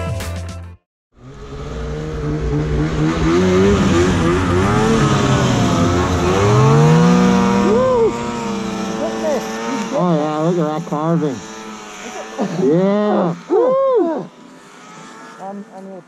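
A snowmobile engine revving up and down, with people shouting over it. The music ends in the first second, and the engine and shouts fall away about fourteen seconds in.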